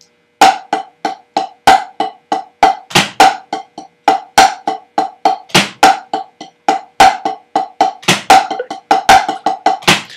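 Wooden drumsticks playing inverted paradiddle nines on a drum practice pad: a fast, even run of sharp strokes, about six a second, with a louder accented stroke about every 1.3 seconds as the nine-stroke pattern repeats.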